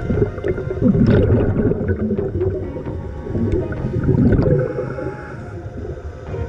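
Underwater sound of a diver's exhaled air bubbling, with a low rumble throughout; the bubbling swells twice, about a second in and again about four seconds in.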